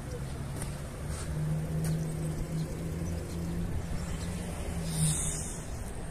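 Parked police car idling: a steady low engine hum. A brief rustle comes about five seconds in.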